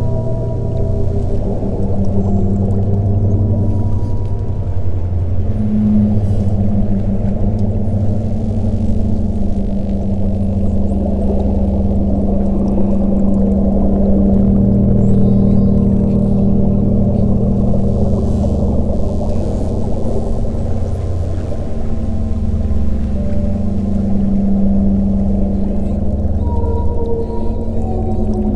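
Ambient meditation music of low, sustained drone tones with whale calls mixed in.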